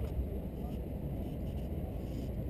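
Steady low outdoor rumble with no distinct events, like distant traffic or wind on the microphone.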